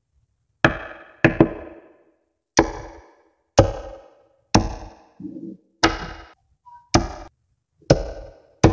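Blocks of small neodymium magnet balls snapping together: about eight sharp clacks, roughly one a second with a quick double near the start, each leaving a brief ringing tail. A shorter, duller knock comes a little after the middle.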